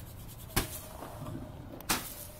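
Two sharp firework bangs about a second and a half apart, the second as a red firework burst goes off.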